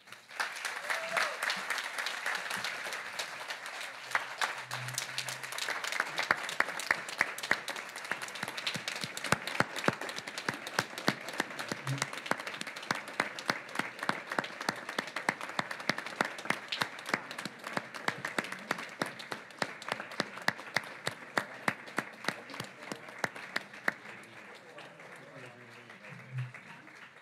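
A roomful of people applauding together, with some sharp single claps standing out close by; it starts at once and thins out toward the end.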